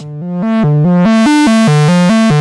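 Synthesizer note sequence played through the Pas-Isel low-pass filter, its gain stage driven into a woolly, fuzz-pedal-like overdrive. It is a fast stepped pattern of about four to five notes a second that grows louder and brighter over the first half second as the filter's cutoff knob is turned up.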